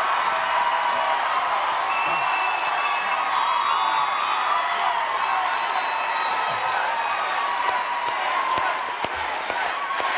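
Studio audience cheering and applauding steadily, with scattered whoops and shouts over the clapping.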